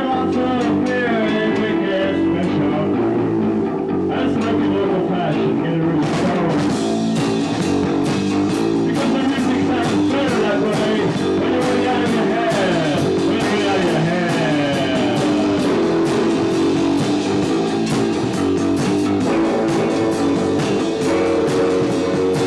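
Loose live rock jam with guitar and a voice through a hand-held microphone. Drums and cymbals come in about six seconds in.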